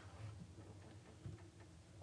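Near silence: room tone with a few faint short ticks, the clearest about a second and a quarter in.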